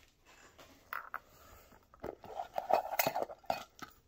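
Metal Poké Ball tin being opened and its contents handled: a few light clicks about a second in, then a run of metallic clinks and clatter for about a second and a half.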